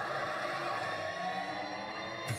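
Action-film trailer soundtrack playing back: car-chase vehicle noise and sound effects, steady, with music beneath.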